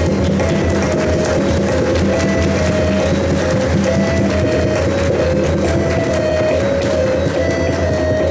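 Tabla solo, the pair of drums struck in fast, dense strokes, over a harmonium playing a short repeating melody (the lehra) that keeps the cycle.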